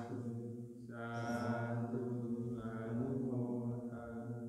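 A Theravada Buddhist monk chanting in Pali, one male voice held on a nearly level low pitch in long drawn-out phrases, with a short breath just before a second in.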